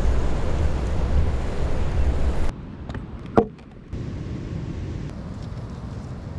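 Wind buffeting the microphone over surf on the shore, cutting off abruptly about two and a half seconds in. A quieter outdoor background follows, with one short sharp sound about a second later.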